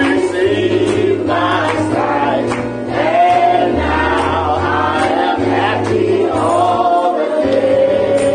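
Gospel praise music: voices singing together as a choir over sustained bass notes, with a steady beat.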